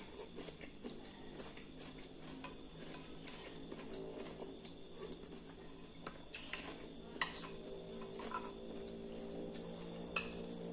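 Metal spoon clicking and scraping against ceramic bowls as rice and noodles are scooped, a few light clinks, mostly from about six seconds in, over a steady high-pitched background drone.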